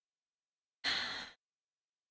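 A woman's short breathy sigh, about half a second long, about a second in.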